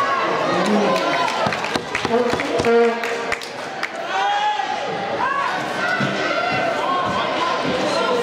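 Spectators at an ice hockey game shouting and calling, with a quick run of sharp knocks from sticks and puck against the ice and boards about one to three and a half seconds in.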